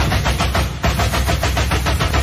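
A samba drum section (bateria) playing a fast, dense rhythm of rapid strokes over a heavy low drum.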